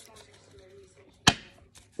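A single sharp knock about a second and a quarter in, as a hand picks up a deck of oracle cards from the wooden table; otherwise a quiet room.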